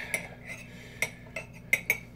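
Table knife sawing through a toasted rye-bread sandwich, its blade clicking sharply against the ceramic plate a few times.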